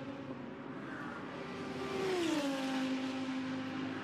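GT3 race car engines running past a trackside microphone. One car's engine note drops in pitch about two seconds in as it comes by, then holds steady.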